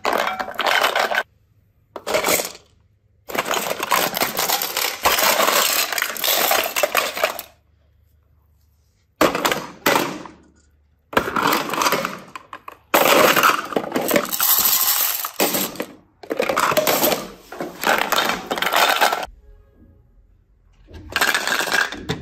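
Hard plastic toy cases clattering against each other as they are handled, in repeated bouts of one to four seconds with short pauses.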